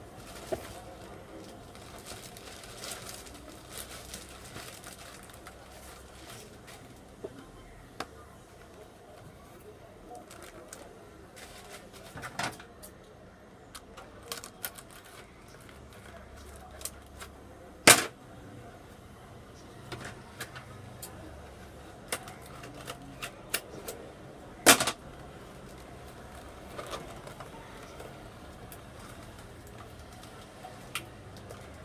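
Handling noise of a plastic mailer bag and cardboard packaging being opened: rustling with scattered sharp clicks and snaps, two of them much louder in the second half.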